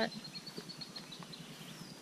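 Faint outdoor ambience with a bird's thin, high trill for about the first second and a short high call near the end.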